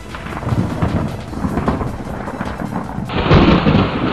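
Cartoon thunder sound effect: a rumbling storm that swells into a louder, heavier crash of thunder about three seconds in as the airship is thrown about.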